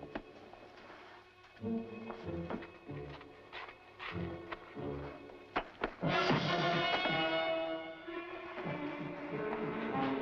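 Dramatic orchestral background score. For the first six seconds it plays low, separate bass notes with a few sharp knocks among them. About six seconds in, a loud, brass-led orchestral chord comes in and is held.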